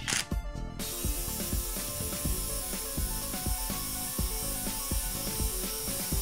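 Hilti SID 2-A12 12-volt cordless impact driver hammering under load, its impact mechanism knocking continuously as it drives a fastener. About a second in, a steady hiss joins it.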